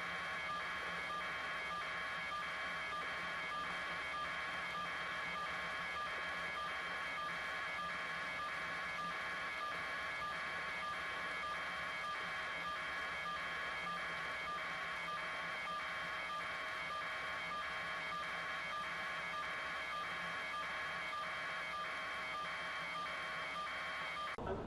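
An electronic signal tone: a few steady fixed tones with a higher tone pulsing on and off evenly, roughly one and a half times a second.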